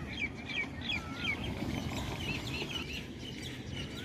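Small birds chirping in quick runs of short rising-and-falling calls, over a steady low rumbling noise.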